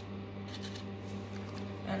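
Paint marker tip scratching and rubbing on corrugated cardboard as it colours in, over a steady low hum.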